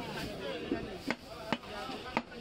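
Long butcher's knife chopping beef on a round wooden chopping block: three sharp chops about half a second apart.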